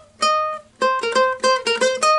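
Ukulele played note by note on the A string: one plucked note rings out, then from just under a second in comes a quick run of about seven picked notes.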